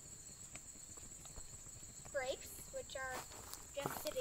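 Faint footsteps and light clicks on sandy ground, over a steady high-pitched chirring of crickets; a few faint voices come in about halfway through.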